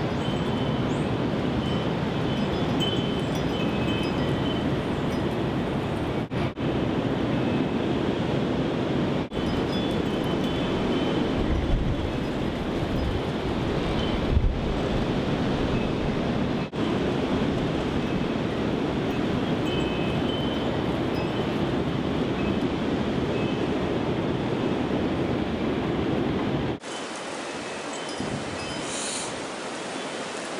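Strong wind of about 25 mph rushing through trees and hitting the microphone as a steady loud rush, with a few faint high tones now and then. Near the end it drops suddenly to a quieter, thinner rush.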